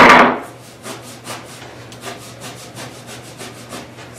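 Hand-pump flocking gun blowing flock fibers: a loud puff right at the start, then quick repeated pump strokes, about five or six a second, with a soft rubbing sound.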